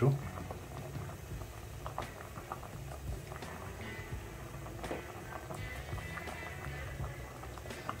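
Water at a rolling boil in a metal pot of whole sweet potatoes, bubbling steadily with many small pops.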